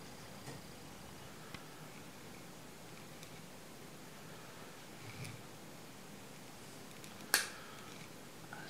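Faint room tone with a few light ticks while clear silicone is laid onto a wooden board from an applicator nozzle, and one sharp click near the end from handling the silicone applicator.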